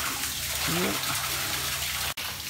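Water running and splashing in a sewage lift station pit, with a low steady hum underneath.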